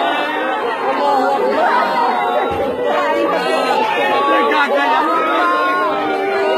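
A group of people talking over one another, several voices at once.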